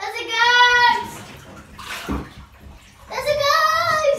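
A child's high voice making two long, held calls or sung notes, one near the start and one about three seconds in, with water sounds from the bath in the quieter stretch between them.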